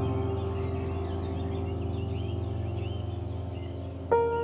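Ambient background music: a held chord slowly fading, with bird chirps mixed in above it.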